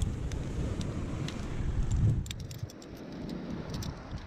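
Wind buffeting the microphone, then from about two seconds in a run of sharp metallic clicks: trad climbing gear (nuts and carabiners on a harness rack) clinking and jangling as it is handled.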